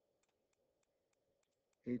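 Faint, irregular light ticks of a pen stylus on a writing surface as a digit is handwritten, over a low, quiet room hum; a man's voice begins near the end.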